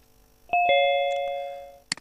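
Zoom meeting's two-note descending ding-dong chime as the call connects: two tones struck a fraction of a second apart, the second lower, ringing out for over a second. A short click near the end.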